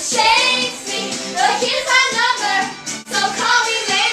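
Pop song playing, with a high singing voice over a backing track.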